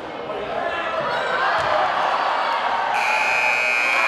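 Basketball game in a gym: players' and onlookers' voices and a ball bouncing on the court. About three seconds in, a scoreboard buzzer starts, one steady harsh tone.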